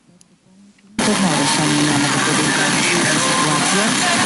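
Tivoli Audio PAL+ FM radio being tuned across the band. It is almost silent for about a second, then loud FM static hiss starts suddenly, with a weak station faintly coming through the noise.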